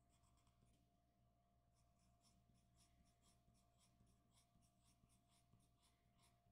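Faint graphite pencil shading strokes on paper: a quick run of short back-and-forth scratches, about four a second, from about two seconds in.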